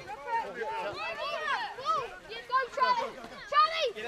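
Several voices shouting and calling over one another at a junior rugby match, with a loud shout near the end.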